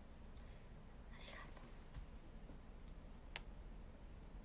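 Near silence: faint room tone, with a soft whisper-like breath about a second in and a single sharp click a little past three seconds.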